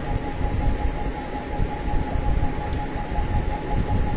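Steady background noise: a low rumble and even hiss with a constant thin high hum.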